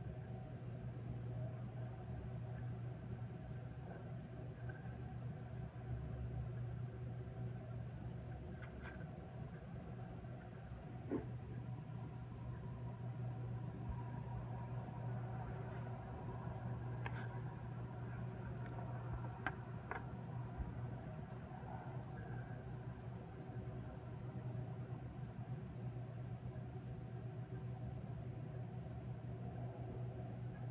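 Steady low background hum, with a few faint ticks scattered through it.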